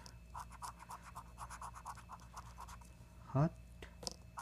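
Scratching the latex coating off a lottery scratch-off ticket, in quick repeated strokes, several a second.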